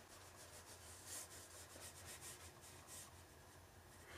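Faint rubbing of a watercolor brush stroked across watercolor paper, a series of soft strokes.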